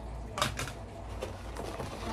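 Short plastic rattles and a clack from a clear plastic ruler and a plastic pencil pouch being handled, the loudest about half a second in, over a steady low hum.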